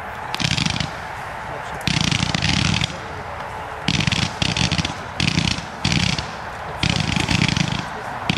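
Kometa P7969 fireworks cake firing a rapid, unbroken stream of small shots in a fan: a steady rattling fizz that swells into louder bursts about once a second.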